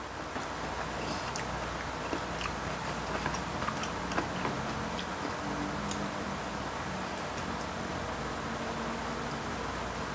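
Quiet eating: a few light clicks of chopsticks against dishes and soft chewing, mostly in the first half, over a steady low hum of room noise.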